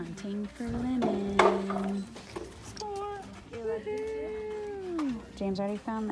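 A person's voice making wordless sounds: a held note about a second in, short notes, then a long note that slides downward near five seconds. Among them are a few sharp clicks of metal clothes hangers on a rack.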